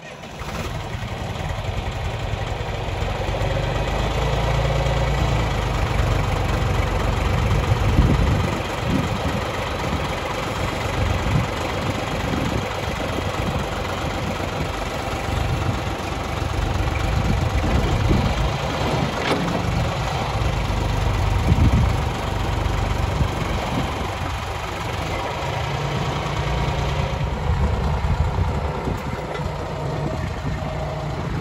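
Engine of a John Deere backhoe loader running, its level rising and falling as the operator works the loader and moves the machine, with a few sharper peaks along the way.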